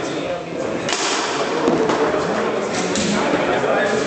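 Foosball game in play: a sharp crack about a second in as the ball is struck or slams into the table, with lighter knocks of the ball and rods afterwards, over background chatter.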